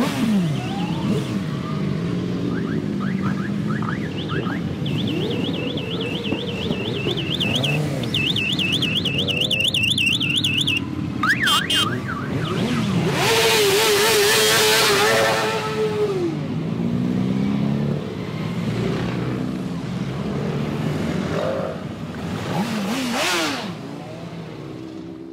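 A column of motorcycles riding off together, their engines revving up and down in many overlapping rises. A warbling siren-like alarm tone sounds for several seconds in the first half. Just past halfway comes a louder blare that lasts about three seconds.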